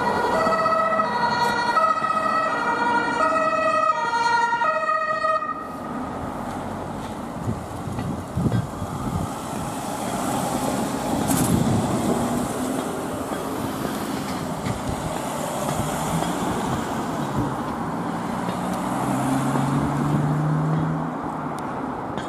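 German two-tone emergency horn (Martinshorn) on a Mercedes-Benz ambulance, alternating between its two pitches and cut off about five seconds in. Then the ambulance's engine and tyres as it drives past, with the engine rising in pitch as it pulls away near the end.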